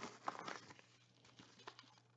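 Faint rustling and scraping of a manila paper envelope pack being handled as cards are slid out of it, a few soft scratchy sounds in the first second, then almost quiet.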